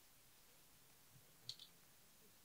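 Near silence, broken by a brief, faint double click about one and a half seconds in.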